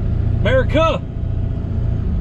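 Steady low road and engine rumble inside a moving pickup truck's cab, with a short two-note voice sound, each note rising and falling, about half a second in.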